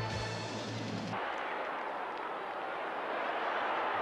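A short stretch of broadcast graphics music cuts off about a second in. It gives way to the steady, even noise of a large football crowd in the stands.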